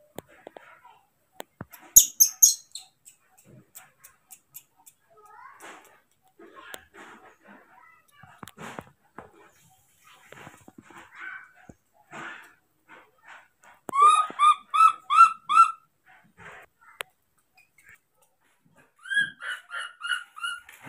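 Baby macaque calling: a run of about six short, loud, arched cries in quick succession a little past the middle, and more cries near the end, with a brief burst of very high squeaks about two seconds in. A hungry baby's calls for food.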